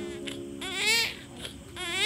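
Newborn baby crying in wavering wails, one ending about a second in and another starting near the end, over soft background music.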